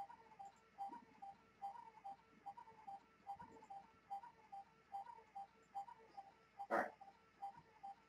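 Faint, steady rhythmic ticking of short pitched pips, about two to three a second. A short spoken "All right" comes near the end.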